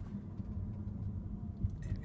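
Low, steady road rumble inside the cabin of a moving 2013 Chevy Volt, with the climate fan switched off; otherwise darn near silent.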